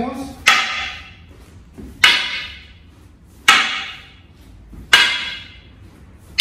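Wooden hanbo striking an upright wooden staff four times, about a second and a half apart. Each hit is a sharp wood-on-wood knock with a short ringing tail.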